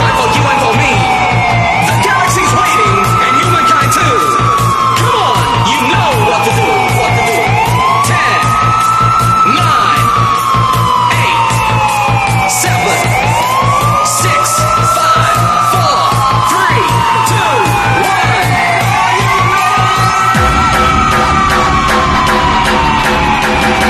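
Vinahouse dance music: a siren-like wail that rises quickly and then falls slowly, repeating about every six seconds over a steady beat. The bass drops out near the end.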